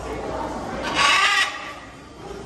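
A blue-and-yellow macaw gives one loud, harsh squawk about a second in, lasting about half a second.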